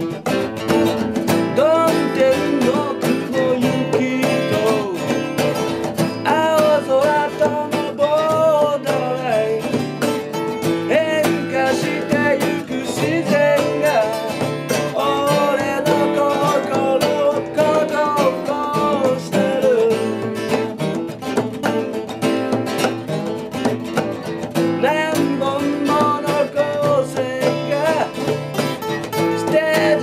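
A man singing live to his own strummed acoustic guitar, the steady strummed rhythm running under his voice.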